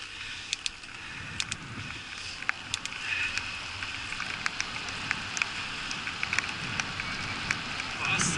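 Bicycle rolling on wet asphalt in the rain: a steady hiss of tyres and spray, with scattered sharp ticks of raindrops striking the handlebar camera.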